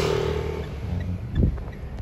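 Mitsubishi Strada's 2.5-litre four-cylinder DI-D turbo-diesel engine revved by the gas pedal, held briefly at higher revs, then easing back. A short thump comes about one and a half seconds in.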